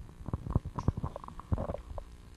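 Scattered soft clicks and low knocks, a dozen or so at uneven intervals, with no steady sound between them.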